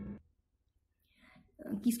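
A woman speaking Hindi-English breaks off, leaving about a second of near silence, and then starts speaking again near the end.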